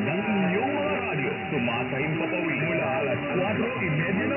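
DWPR's 1296 kHz AM medium-wave broadcast heard over a long distance on an SDR receiver: a voice announcing, weak and blurred by static, fading and steady whistle tones from interfering stations, with the sound muffled by the narrow AM bandwidth.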